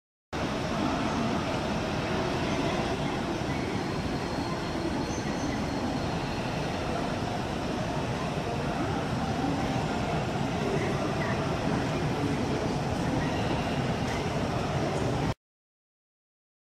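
Steady ambient hum of a large, busy railway station hall, a blend of crowd noise and train sounds with no single standout event. It starts abruptly just after the beginning and cuts off suddenly just before the end.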